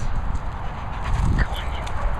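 A man calling "come on" to a dog once, about a second in, over constant low rumbling on the microphone.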